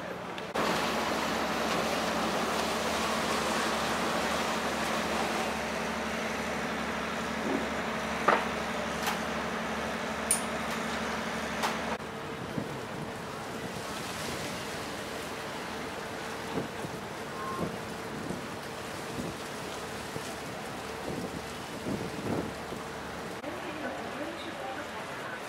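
Harbourside wind rushing over the microphone, with a steady low hum beneath it for the first half. In the second half, after a cut, the rush is lighter, with a steady tone and scattered voices of passers-by.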